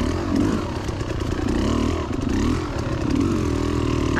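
Two-stroke dirt bike engine, a Beta Xtrainer 300, being ridden at low speed, its revs rising and falling in short blips while working over a log.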